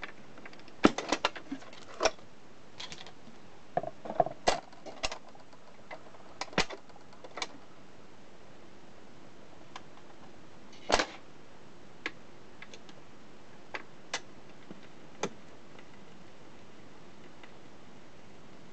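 Clicks and clunks of a record player's autochanger: records and the stack arm handled on the spindle, then a louder knock as the changer mechanism cycles, followed by a few light ticks.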